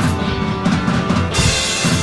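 Rock music: a drum kit playing with kick and snare under sustained pitched chords, with a cymbal wash coming in about one and a half seconds in.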